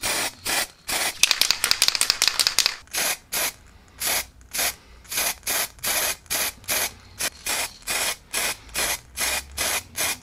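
Aerosol spray paint can hissing in short bursts, about two a second, with a quicker run of bursts a second or two in, as the wrench handle is sprayed.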